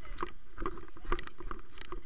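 Footsteps on wet, muddy ground, about two steps a second, with low rumble from the moving camera.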